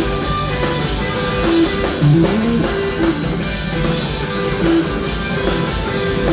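Live rock band playing: electric guitar picking repeated notes over a drum kit, with a note sliding upward about two seconds in.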